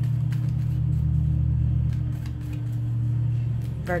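A steady low hum with faint light clicks and flicks of tarot cards being handled and shuffled.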